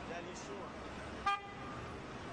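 A single short car horn toot about a second and a quarter in, over a steady hum of street traffic and faint distant voices.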